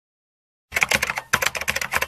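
Keyboard-typing sound effect: a quick run of key clicks that starts under a second in, with a short break partway through.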